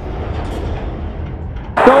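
Tail of a logo intro's music sound effect: a low rumble that thins out. About 1.75 s in it cuts abruptly to louder arena crowd noise from a basketball broadcast.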